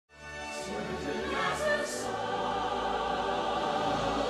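Orchestral film music with a choir singing, fading in over the first moment.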